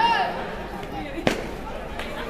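Voices of children and adults talking and calling out, with a loud shout at the start and one sharp crack a little past the middle.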